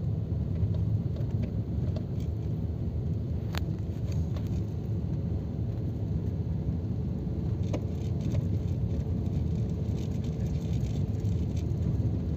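A vehicle driving along a rough forest road: steady low engine and road rumble, with a single sharp click about three and a half seconds in.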